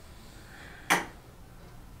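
Faint room tone with a single short knock about a second in, from quilting tools being handled on a cutting mat while a fabric square is marked along a ruler.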